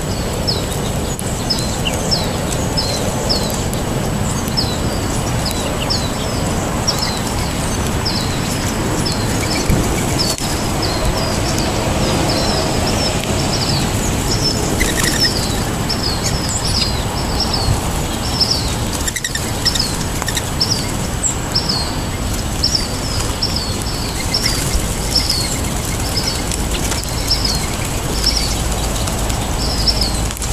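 A small songbird chirping over and over, short high notes at roughly two a second, over steady low background noise.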